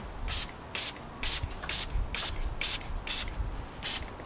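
Hand trigger spray bottle squirting carpet dye onto carpet in quick repeated pumps: about two short hisses a second, eight in all.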